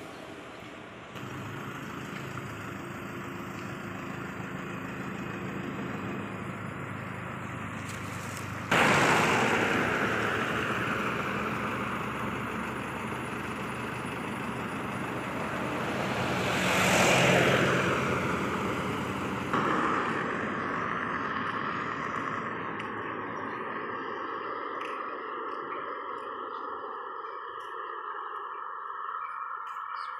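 Roadside traffic: a vehicle passes by on the road, rising and falling in level and loudest a little past halfway, over a steady background of engine and road noise. A steady high-pitched drone joins in the last third.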